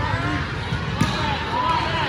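A volleyball smacks once, sharply, about halfway through, over steady chatter and calls from players and spectators in the gym.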